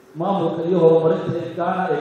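A man's voice into a handheld microphone, starting just after a brief pause, in long, level-pitched, intoned phrases.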